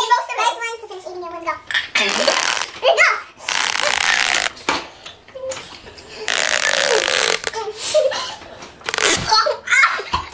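Girls' muffled voices and giggling while chewing a gummy, broken by three long breathy hisses of about a second each.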